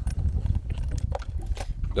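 Small clicks and rustles of plastic as a clear tackle box and a lure packet are handled, irregular and scattered, over a steady low rumble.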